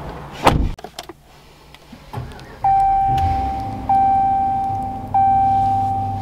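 A heavy thump about half a second in, then a 2021 Ram 1500's dashboard warning chime: one clear steady tone that restarts about every second and a quarter, over a low steady hum, with the truck's ignition on.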